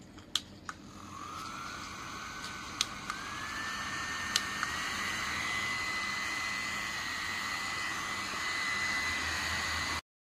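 Portable USB-rechargeable neck fan switched on with button clicks, its small motor starting up with a thin whine that rises in pitch. The whine then steps higher twice, each step with a click, as the speed setting is raised, over a growing rush of air.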